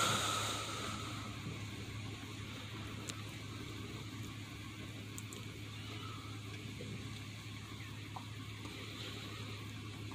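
Faint steady low hum with a soft hiss, heard from inside a closed truck cab, with a few faint ticks.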